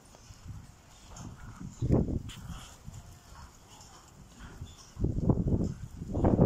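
A flock of young lambs moving about in a pen, with a louder burst of sound about two seconds in and louder, repeated sounds in the last second.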